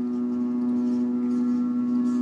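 A steady hum of several held tones at once, unchanging in pitch and level throughout.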